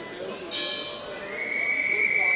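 Signal stopping a wrestling bout: a sudden shrill sound about half a second in, then a long steady high tone from just over a second in, over voices in the hall.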